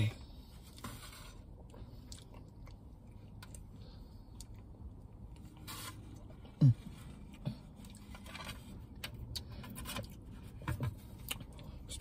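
Plastic spoon scraping and clicking in a takeout dish of banana split, with quiet eating sounds. About six and a half seconds in there is a short hummed "mm" that falls in pitch.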